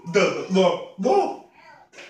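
A man's unaccompanied voice sounding out syllables in a steady rhythm, about two a second, trailing off near the end.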